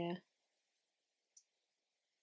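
A woman says "yeah", then near silence with a single faint click about a second and a half in.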